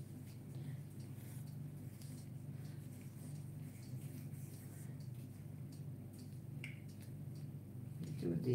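Faint rustling and small crinkling clicks of a thin paper napkin being handled and peeled back from a freshly poured acrylic canvas by gloved hands, over a steady low hum.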